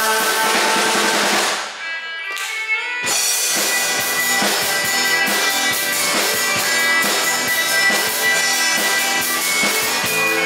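Live rock band playing with drum kit, bass and guitars. The music drops away briefly about two seconds in, and about three seconds in the band comes back in with a steady drum beat.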